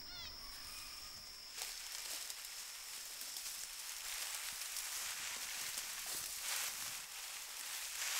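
Grassland and swamp ambience: a steady high insect buzz that stops about one and a half seconds in, with a quick run of bird calls at the start. After that comes an even rustling hiss that grows slowly louder, the sound of moving through dense dry grass.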